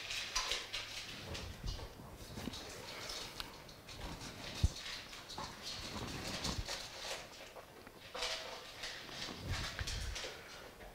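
Dogs eating from their food bowls: irregular small clicks and crunches, with one sharp knock a little before halfway through.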